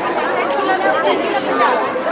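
Crowd chatter at a busy open-air market: many voices of vendors and shoppers talking at once, with no single voice standing out.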